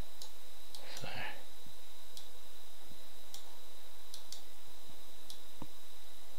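Scattered single computer-mouse clicks, about seven spread over several seconds, over a steady hiss with a faint high steady tone.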